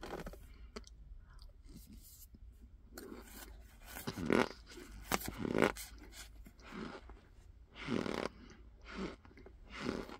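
Mouth crunching and chewing cornstarch in irregular bursts, with louder crunches about four, five and a half and eight seconds in.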